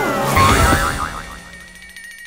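Cartoon sound effects of a fall: a heavy thump about half a second in, followed by a wobbling boing that fades within a second. A faint steady high ringing tone is left after it.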